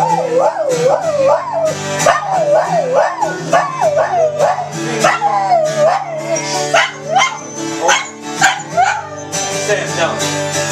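Border collie howling along to acoustic guitar: a wavering howl that rises and falls in pitch about twice a second over the sustained guitar notes, stopping about nine seconds in as the guitar carries on.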